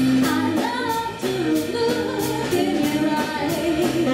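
A woman singing lead with a live band of saxophone, trumpet, trombone, electric guitars and drums, over a steady drum beat.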